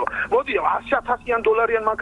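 Speech only: a person talking in Georgian into a studio microphone, on a radio broadcast.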